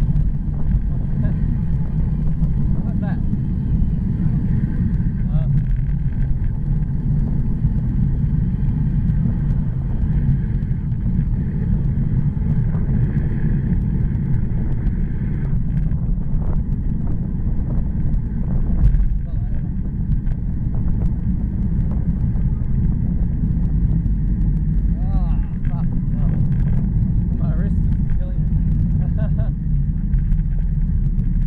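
Wind rushing over a bicycle-mounted action camera's microphone during a downhill ride at about 30 km/h, heard as a steady low rumble. A brief louder gust comes about two-thirds of the way through.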